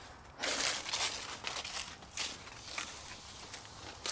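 Footsteps on dry fallen leaves: a few irregular steps of someone walking around a truck.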